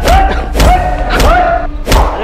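Four heavy thuds about two-thirds of a second apart, blows landing on a suspect during a rough police interrogation, over dramatic background music.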